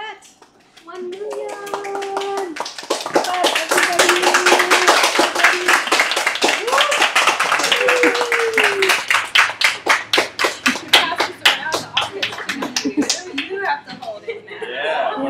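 A small group clapping and cheering, with voices calling out in held cheers over fast, dense clapping. The clapping builds about a second in and thins out to a few separate claps before stopping near the end.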